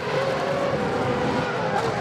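Formula One cars' 2.4-litre V8 engines running at speed on the circuit, a steady engine drone.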